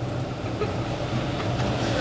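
Room tone: a steady low hum with faint hiss, no speech.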